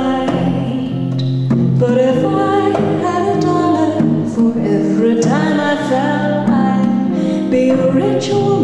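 A woman singing a folk song, accompanied by a strummed steel-string acoustic guitar and a hand drum played with the hands.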